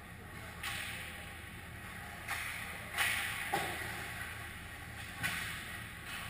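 Ice hockey play on the rink: about five sharp scraping hisses of skate blades and sticks on the ice, coming every second or so, each fading quickly in the rink's echo.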